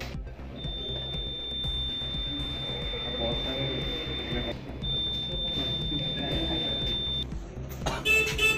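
Electronic voting machine's long, high-pitched beep, the signal that a vote has been recorded, held for several seconds with a short break about halfway through. Voices murmur in the room behind it.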